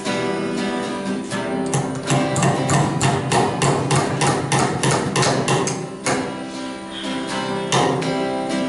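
Acoustic guitar music playing. Over it, a hammer drives a nail into a wooden log with a run of sharp blows, about three a second, from about two seconds in to six seconds, and one more blow near the end.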